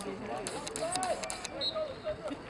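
Indistinct voices of players and spectators talking and calling out across an outdoor soccer field, with a few sharp clicks about half a second to a second and a half in.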